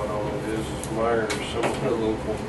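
Indistinct voices talking, with a few short knocks or clicks around the middle.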